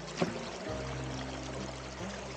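Water running and splashing at a metal sluice box in a shallow creek as gravel is worked at its mouth, under background music with held notes; a short sharp hit sounds about a quarter second in.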